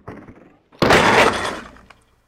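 Skateboard tail popping off a ledge, wheels rolling briefly, then a loud landing about a second in, the board slapping down and rattling as it rolls away and fades.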